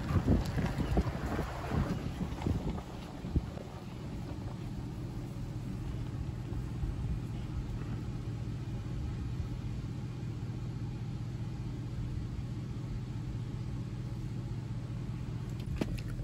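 A car's engine running, heard from inside the cabin as a steady low hum, with some irregular rustling noise in the first couple of seconds and a single knock shortly after.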